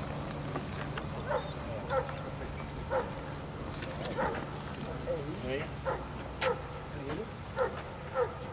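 A dog barking repeatedly, short barks about once a second.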